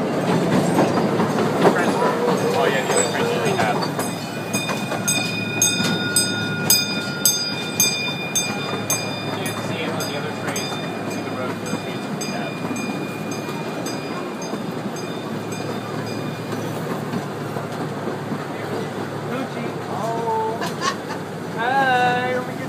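Small amusement-park train running along its track: a steady rolling rumble with regular clicking for a while, and a high steady squeal that holds for most of the middle of the ride stretch.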